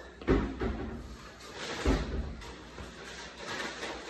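Two dull thumps about a second and a half apart, as a person drops down onto a wooden floor into push-up position, hands landing and then feet going back, with faint shuffling after.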